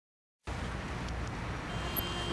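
Dead silence for about half a second, then steady background noise with no voices, ending in a brief click.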